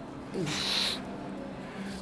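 A man's forceful exhale with a short grunt that falls in pitch, breath hissing, about half a second long, as he strains to row a heavy dumbbell. A steady low hum runs underneath.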